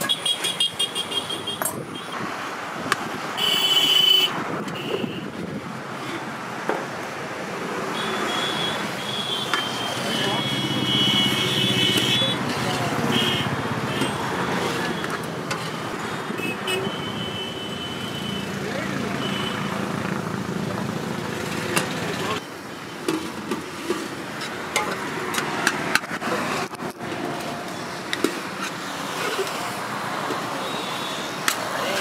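Road traffic running past, with vehicle horns honking several times, in short toots and one longer spell about a third of the way in. Under it, background voices and the clink of steel serving vessels and plates.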